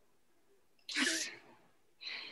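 A sudden, sharp breathy burst from a person's voice about a second in, lasting about half a second, with a second one starting right at the end.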